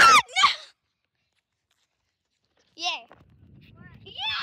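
A child's voice: a brief high shout right at the start, then about two seconds of dead silence, then a short rising-and-falling cry near the end.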